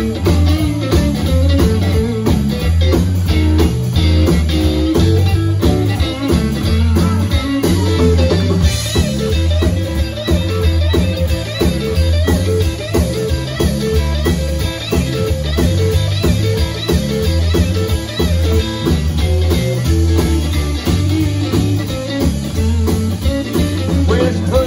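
Live rock band playing an instrumental passage without vocals: electric guitar prominent over bass guitar and drums, with a steady, driving bass line.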